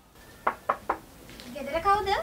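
Three quick knocks on a wooden door, evenly spaced, followed about a second later by a person's voice calling out.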